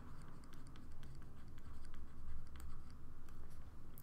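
Stylus writing by hand on a tablet screen: a run of small scratches and ticks as a word is written.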